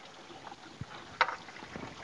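Coolant trickling faintly from the engine block where the water pump has just come off, with a light knock about a second in and a sharp click shortly after.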